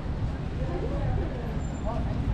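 Street ambience: a steady low traffic rumble with faint voices of people talking in the background.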